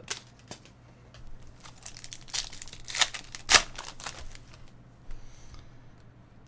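Foil wrapper of a trading card pack being torn open and crinkled by hand, a run of sharp crackles, loudest about three and three and a half seconds in.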